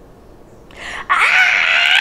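A woman's loud, high-pitched shriek: it swells from about half a second in, is held at full strength for most of the second half, and starts to slide down in pitch right at the end.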